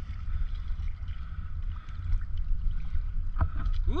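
Wind buffeting the microphone as a low, unsteady rumble, with faint water sound beneath it.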